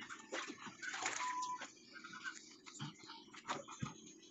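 An otter splashing in a tub of water and clambering out over its rim, with scattered wet slaps, drips and clicks, and a brief steady high tone about a second in.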